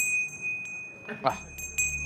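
Small handheld brass bell shaken, its clapper striking repeatedly and the bell ringing with a high, steady tone. A low drone comes in past the middle.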